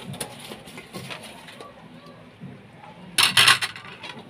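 Fried chicken wings tipped from a bowl into a metal wok of sauce, with soft knocks as they land. A little past three seconds in comes a loud run of quick clattering strokes as a metal spoon scrapes and knocks against the wok to mix them.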